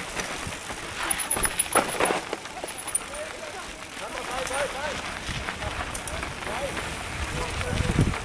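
Mountain bike ridden down rocky dirt singletrack: the bike rattles and its tyres rumble on dirt, with sharp knocks over rocks, thickest about a second or two in.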